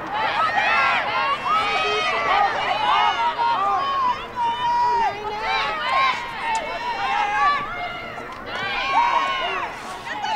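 Several women's voices shouting and calling out over one another during play, high-pitched and overlapping throughout.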